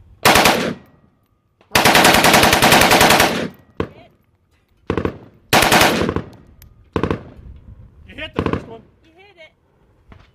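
Select-fire 7.62×39 AKM rifle fired on full auto: a short burst, then a long burst of about two seconds, then several shorter bursts and single shots. A voice is heard faintly near the end.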